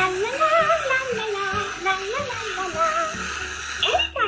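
A cheerful song: a sung melody gliding up and down over music, with a short laugh about a second in.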